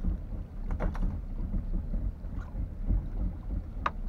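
Low rumble of wind on the microphone, with a few short knocks and clicks on a fibreglass boat deck about a second in and again near the end.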